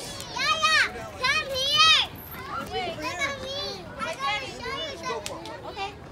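Children's voices at play: two loud, high-pitched calls in the first two seconds, then quieter child chatter.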